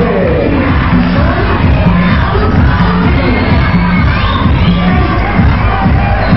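Loud music with a steady beat, a low note about once a second, under an audience cheering and shouting.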